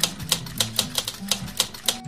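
Typewriter-style key clicks, about five or six a second, that stop near the end, over background music with a low melodic line.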